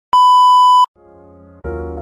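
A loud, steady, high test-tone beep of the kind played over TV colour bars, lasting under a second and cutting off sharply. Soft keyboard music then comes in and grows louder about a second and a half in.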